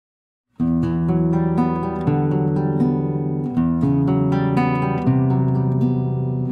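Instrumental music starting about half a second in: acoustic guitar plucking chords that change about every one and a half seconds.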